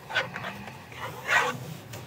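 Handling noise from a fabric sun visor organizer as its elastic strap is stretched over a car sun visor: soft rustling and rubbing, with one louder, brief rustle a little past the middle.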